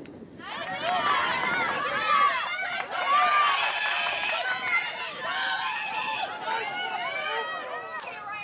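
Players and spectators at a live soccer game shouting and calling over one another, many high voices at once, densest through the middle.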